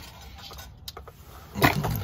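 Mostly quiet background with a single light click, then near the end a brief clatter as a car crankshaft position sensor and its wiring lead are handled on concrete.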